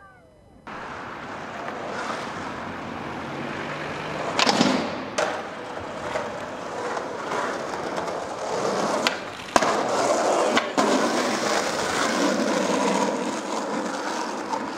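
Skateboard wheels rolling over rough asphalt, starting about a second in, with several sharp knocks of the board on the ground about four and a half seconds in and again around nine to eleven seconds in.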